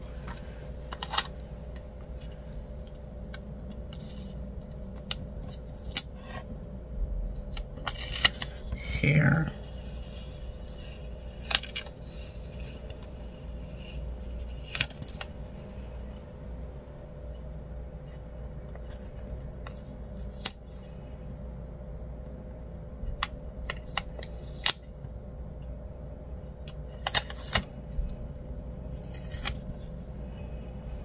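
Paper stickers being peeled from a sticker sheet and handled on a planner page: scattered short rustles and clicks over a faint steady hum.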